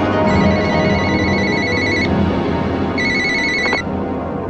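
Telephone ringing with an electronic trill: one long ring, a pause of about a second, then a shorter ring that cuts off, as an answering machine picks up. Soft dramatic music plays underneath.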